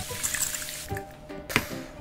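Fine-mist spray bottle of facial toning mist hissing as it sprays onto the face. One long spray fades out about one and a half seconds in, then a short second burst follows.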